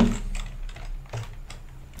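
Computer keyboard being typed on: a handful of separate keystrokes, spaced irregularly.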